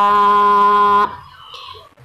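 A woman's unaccompanied voice holding one long, steady note in Tày phong sư folk singing. The note stops about halfway through, leaving a short quieter gap before the singing resumes.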